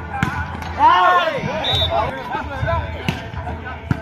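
Spectators shouting and calling out around an outdoor volleyball court, loudest about a second in. Through the voices come a few sharp slaps of the volleyball being hit: one just after the start and two near the end.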